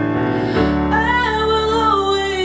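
A woman singing live to her own keyboard accompaniment: held piano-toned chords with a deeper bass note coming in, and her voice entering with a sustained, wavering sung line about a second in.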